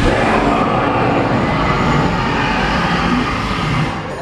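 Fire-breathing effect of the animatronic dragon on Gringotts bank: a gas flame burst and roar, a loud, steady, deep rumbling whoosh.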